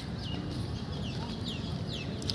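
A bird calling in a run of short notes that fall in pitch, about three a second, over a low steady background rumble.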